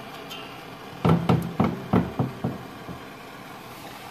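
Metal burner pot knocking against the cast-iron coal stove as it is set back into the hole in the stove's floor: a quick run of six or seven clunks starting about a second in and lasting about a second and a half.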